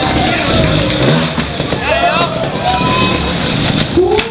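Trials motorcycle engine running, with a voice talking loudly over it.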